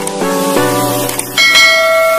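Outro music building up in repeated notes that grow louder, with a bright bell chime ringing out about one and a half seconds in as the subscribe animation's notification bell rings.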